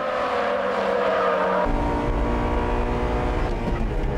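Honda Integra Type R engines, 1.8-litre B18C VTEC four-cylinders, running at high revs on track. About a second and a half in, the sound switches abruptly to one engine heard from inside its cabin, fuller and deeper.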